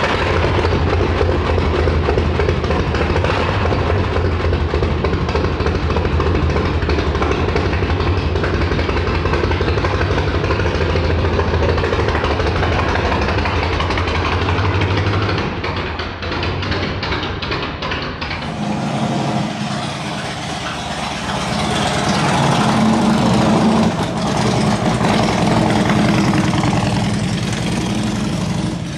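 Harley-Davidson Road King Classic's V-twin engine, just started, idling with a steady low pulse, then pulling away about 15 seconds in; the sound dips briefly and then rises again.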